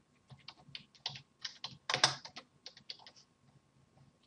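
Typing on a computer keyboard: a quick run of about a dozen keystrokes that stops shortly before the end.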